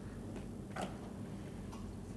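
A pause in the speech: faint room tone with a steady low hum and a few soft clicks.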